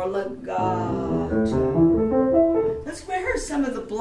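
Upright piano playing a quick run of notes up the keyboard: an A minor arpeggio practised in hand-position blocks. The run ends about three seconds in, and a voice follows.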